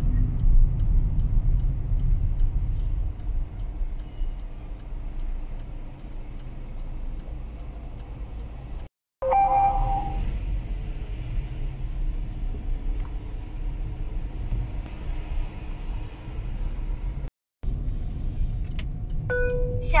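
Low, steady road and engine rumble heard inside a car's cabin while driving, cut out completely twice for a moment. A brief electronic tone sounds about nine seconds in.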